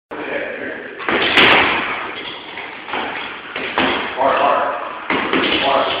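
Fists punching a hanging heavy bag: about five hard thuds spread over the seconds, the second one the loudest, each followed by a short room echo.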